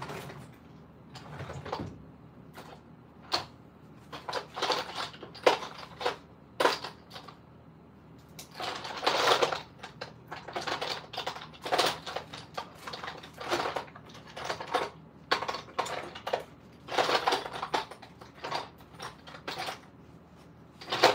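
Glass nail polish bottles clinking and clattering as they are sorted through by hand, in irregular knocks and short rattles, busiest about halfway through.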